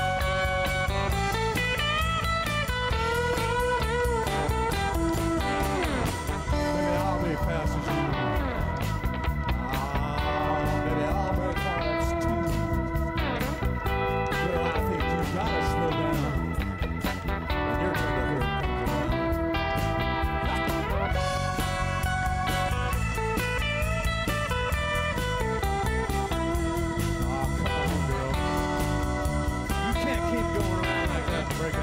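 Live rock band playing, an electric guitar carrying the melody with sustained and bent notes over bass guitar and drums.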